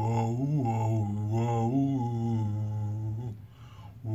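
A man singing a vocal warm-up on a repeated "oh", holding one low note with a small upward lift about once a second. He breaks off a little after three seconds, and the singing starts again at the very end.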